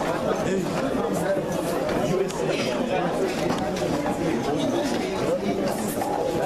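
Many people talking at once in a lecture hall: a steady crowd chatter with no single voice standing out.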